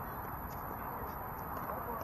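Steady outdoor background noise with a few faint, sharp pops of pickleball paddles striking balls on neighbouring courts.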